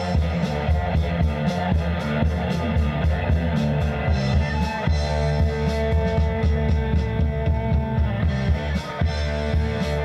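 Live rock band playing: electric guitars and bass guitar over a drum kit keeping a steady beat.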